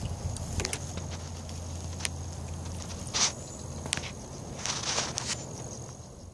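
Rustling and footsteps in grass with scattered sharp clicks and scrapes, the loudest about three seconds in and a cluster near five seconds, over a steady low hum and a faint high whine.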